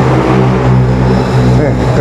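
A motor vehicle's engine running steadily at a low pitch, stepping down slightly in pitch at the start.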